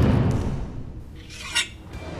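Edited transition sound effect: a deep boom hit right at the start that fades over about a second, then a short high swish about one and a half seconds in.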